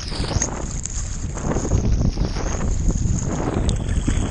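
Sea water splashing and sloshing around a camera held at the surface by a swimmer, coming in uneven surges every second or so over a steady low rumble.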